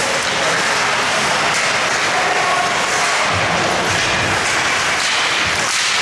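Steady noise in an ice hockey rink during live play: crowd noise in the stands and skates on the ice, with a few faint raised voices and no sharp stick or puck hits.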